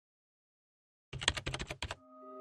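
Keyboard typing sound effect: a quick run of about a dozen keystrokes in under a second, starting about a second in.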